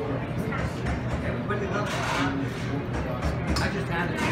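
Busy restaurant dining-room ambience: indistinct voices of other diners over background music.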